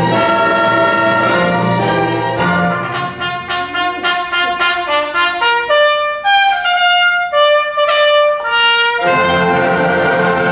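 Symphony orchestra playing classical music. About two seconds in, the full sound thins to a passage of short, separate notes led by trumpet and brass. The full orchestra comes back in near the end.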